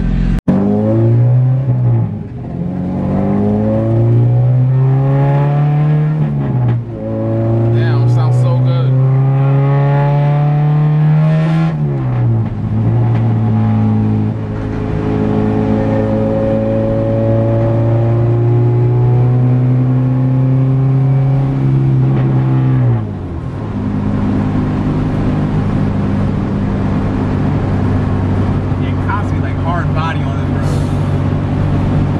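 Acura Integra's K20/K24 four-cylinder, heard from inside the cabin, run hard at full throttle through the gears: the revs climb three times, dropping sharply at each upshift about 2, 7 and 12 seconds in. The engine then holds a steady high pitch for about ten seconds before dropping back to a lower, steady cruise.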